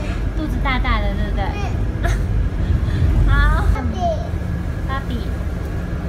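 Low engine and road rumble inside a city bus, with a toddler's high babbling voice over it. The rumble eases about two-thirds of the way through, leaving a steady low hum.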